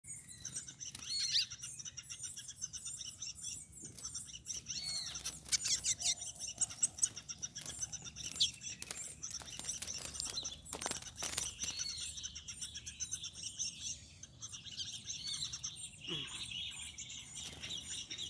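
A small caged songbird singing repeated high, rapid twittering phrases, with a few short rustles of wings flapping against the cage bars around the middle.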